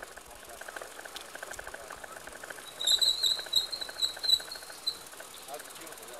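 Cartoon sound effect of a bicycle rolling up: a fast run of light ticks, then a bicycle bell ringing in a rapid trill for about two seconds, starting about three seconds in.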